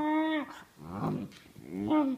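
Airedale Terrier puppy making Chewbacca-like grumbling vocalizations: a long drawn-out call that ends about half a second in, then two shorter calls that rise and fall. It is her protest at being roused while trying to snooze.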